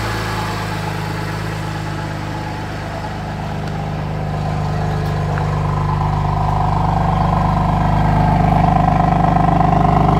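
BMW M2 Competition's twin-turbo inline-six idling steadily, getting gradually louder as the quad exhaust tips come close.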